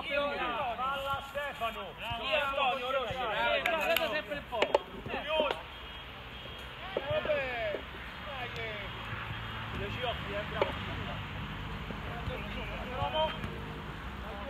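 Men's voices shouting and calling across a floodlit football pitch, with a sharp knock about a third of the way in; after that the voices thin out to a few calls over a steady low hum.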